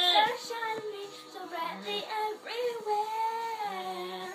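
A young girl singing into a handheld microphone, her voice gliding through drawn-out notes, with a long held note near the end.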